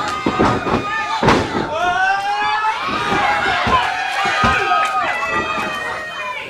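Spectators shouting and yelling at ringside over a wrestling match. Heavy thuds of wrestlers hitting the ring mat break through, one about a second in and another past the middle.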